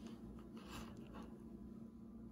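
Faint handling sounds over quiet room tone as an earbud cable's plug is pushed into an MP3 player's headphone jack.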